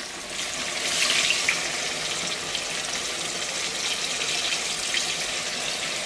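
Hot oil sizzling steadily in a frying pan as a flour-dredged buttermilk chicken piece is laid in, the sizzle swelling about a second in.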